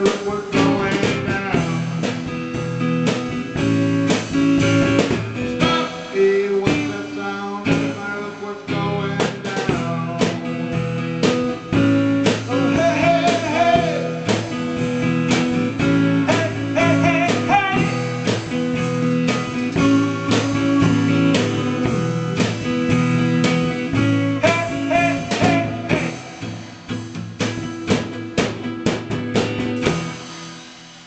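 A small live rock band playing with guitar to the fore over a drum kit, in a passage with no sung words.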